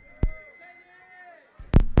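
Handling noise from a DJ's gear heard through the sound system: a sharp click about a quarter second in, faint thin tones in the middle, then two heavy thumps near the end.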